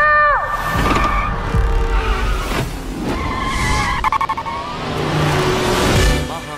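Cars running hard with tyres squealing, over music.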